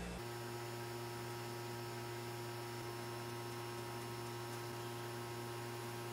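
Steady electrical mains hum with a few fixed tones over a faint hiss; nothing else stands out.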